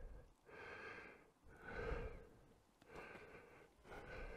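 A person breathing softly close to the microphone: three slow breaths, each about a second long.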